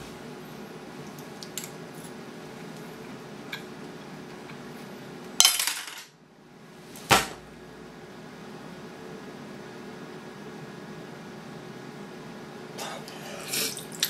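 A spoon clinking a few times on a cereal bowl, then about five seconds in a loud splash and clatter as a face drops into the large bowl of cereal and milk, followed a moment later by one sharp knock.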